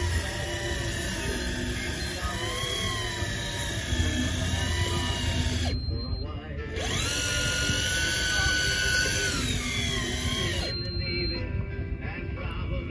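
Electric deep-drop fishing reel motor whining as it winds a fish up from deep water, its pitch wandering with the load. It stops about six seconds in, restarts with a rising whine, and stops again near the end as the fish reaches the surface.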